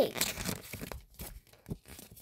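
A paper sticker being peeled off its sheet, with rustling and crinkling of the paper page.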